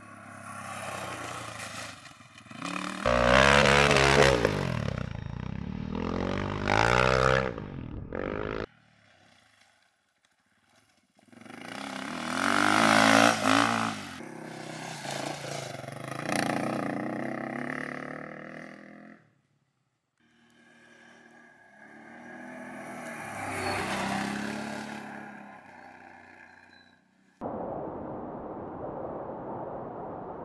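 Off-road rally motorcycles passing one after another, their engines revving up and down as they go by. The first pass cuts off abruptly and the third fades away. Near the end comes a steady even hiss.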